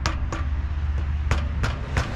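Hammer tapping on a wooden carving in sharp, even knocks about three a second: two taps, a pause of about a second, then three more. A steady low hum runs underneath.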